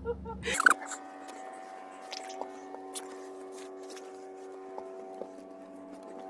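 A steady, faint electrical hum made of several fixed tones, with light rustling and scattered soft ticks from movement and handling in a small enclosed space. A brief louder rustle comes under a second in.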